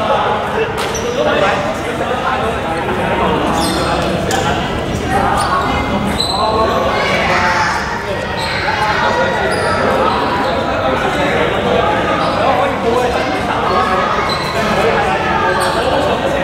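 Several people talking at once, echoing in an indoor gym, with a basketball bouncing on the hardwood court now and then.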